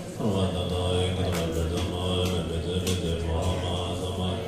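Tibetan Buddhist monks chanting a mantra together in low, steady voices, a continuous droning recitation.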